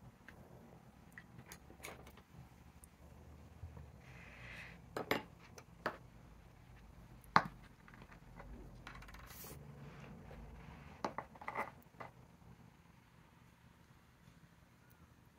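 Scattered light knocks and clinks of small objects being handled and set down on a tabletop, with the soft rustle of a paper towel. The sharpest knock comes about seven seconds in, with a quick cluster of taps near the twelve-second mark.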